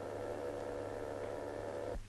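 Steady hiss and static of an open railway dispatcher's telephone line, over a low mains hum; the hiss cuts off suddenly at the end.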